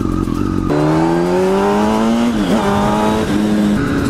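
Kawasaki ZX-10R inline-four engine accelerating away on the road. The engine note climbs steadily from about a second in, dips briefly at an upshift just over two seconds in, then runs on at a steadier pitch.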